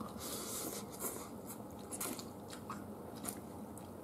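Someone chewing crunchy fried spring rolls and rice noodles close to the microphone: faint, irregular crisp crunches, a few each second.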